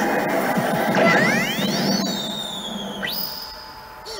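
Universal 'Madoka Magica 2' pachislot machine playing its presentation sound effects as Kyubey appears on the screen. A busy burst of electronic effects and music, with rising sweeping tones about a second in, then a high ringing tone from about three seconds that fades away.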